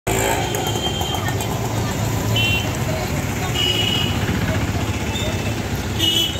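Busy street ambience: steady traffic noise with people's voices, and a few short high-pitched tones.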